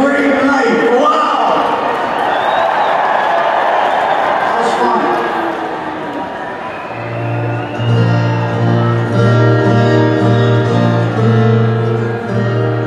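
Stadium crowd noise with voices calling out. About seven seconds in, an amplified acoustic guitar starts strumming held chords through the PA.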